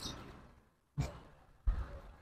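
Two short, faint breath puffs on the microphone, a person exhaling or sighing, about two-thirds of a second apart; the second is the louder and longer.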